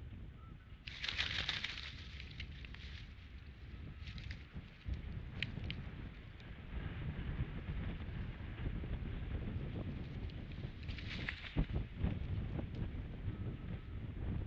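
Steady low wind rumble on a nest-camera microphone, with bursts of rustling as a bald eagle moves on its stick-and-straw nest, about a second in and again around eleven seconds. The second burst ends in a few sharp knocks as the eagle leaves the nest.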